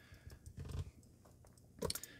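Faint clicks and rattles of an Omega Speedmaster's metal link bracelet as the watch is lifted off its cushion and handled.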